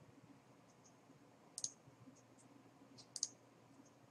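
Computer mouse clicking: a quick cluster of clicks about a second and a half in and another around three seconds, over near silence.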